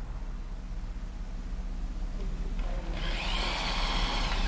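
Electric drill boring a hole through a steel frame bracket and frame rail, starting about three seconds in with a high whine. Before that there is only a low steady hum.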